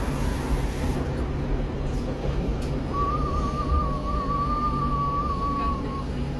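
Steady low rumble of a city bus or tram heard from inside while it rides along. About halfway through, a thin, slightly wavering high tone joins it and holds for about three seconds.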